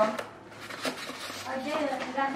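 Cardboard box and its packaging being opened and handled: a few light clicks and rustles. Brief soft speech comes near the end.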